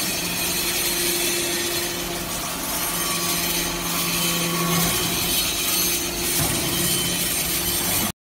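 SBJ-360 hydraulic metal-scrap briquetting press running: a steady machine hum over a dense hiss. The hum dips briefly about five seconds in.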